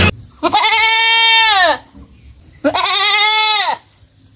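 A goat bleating twice. Each bleat lasts about a second, holds a steady pitch and drops away at the end.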